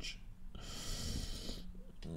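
A man's breathy exhale, a sigh lasting about a second, with no voice in it.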